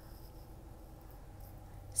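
Faint, steady low hum in the cabin of a 2014 Dodge Grand Caravan with its 3.6-litre V6 engine idling.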